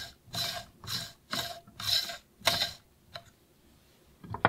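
Saint Anthony Industries BT Wedge distribution tool twisted back and forth on an espresso portafilter, six short scraping strokes about two a second as it levels the coffee grounds, followed by a faint click a little after three seconds.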